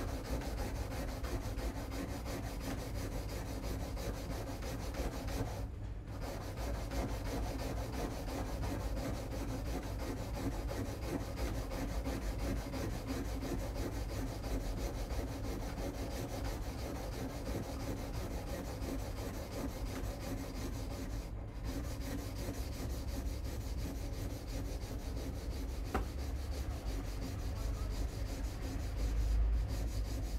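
Steel woodblock carving knife being honed on a 1000-grit diamond stone: continuous back-and-forth rubbing strokes of the blade on the diamond plate, with two brief breaks. The edge is being touched up rather than reshaped.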